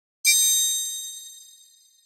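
A single bright, high bell-like chime struck about a quarter second in, then ringing on and fading away over nearly two seconds: a channel logo sting.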